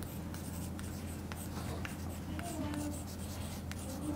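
Chalk writing on a blackboard: a scatter of light taps and scratches as the chalk strikes and drags across the board, over a steady low hum.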